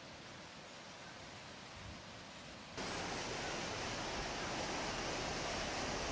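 Steady outdoor ambience with no distinct source: a quiet, even hiss with one short click a little under two seconds in, then an abrupt step up about three seconds in to a louder, steady rushing noise.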